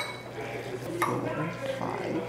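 Metal forks stirring sauced ramen noodles in ceramic bowls, with a clink of fork on bowl at the start and another about a second in, over a low steady hum.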